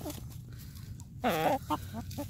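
A hen gives a short call about a second in, over low rustling of the birds pecking in the dirt.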